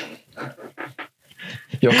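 Breathy, suppressed laughter: about four short chuckles in quick succession, then a man starts to speak near the end.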